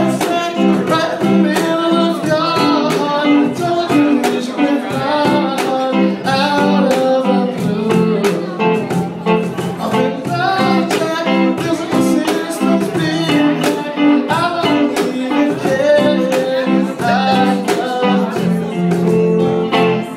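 A live band playing a rock song, guitar to the fore, over a steady beat.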